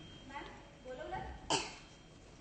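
A person's voice briefly, then a single sharp cough about one and a half seconds in, the loudest sound.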